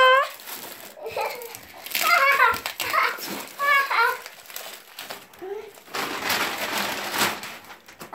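A young child's voice in short high-pitched bursts of talk or vocalising. About six seconds in comes a stretch of rustling noise lasting a second and a half.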